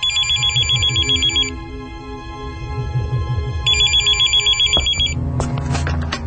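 Electronic telephone trilling in two rings of about a second and a half each, the second starting about three and a half seconds after the first, over a low pulsing music bed. A click comes near the end.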